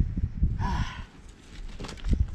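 A man's single breathy exhale, a sigh of exertion after heavy lifting, about half a second in, with low rumbling noise around it.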